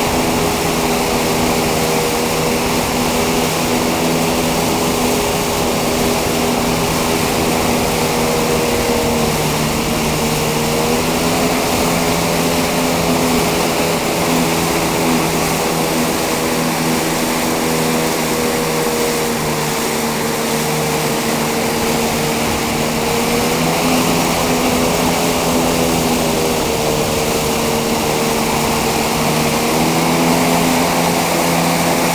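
Tow boat's engine running steadily at speed, its pitch dipping and recovering a few times, over a steady rushing hiss.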